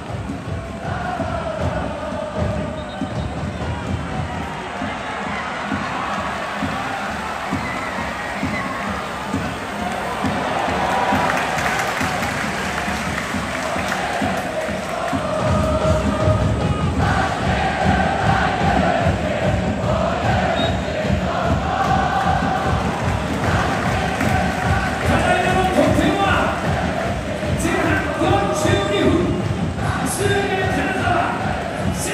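Football supporters' section singing a chant in unison as a massed crowd, over a steady low beat that grows heavier about halfway through.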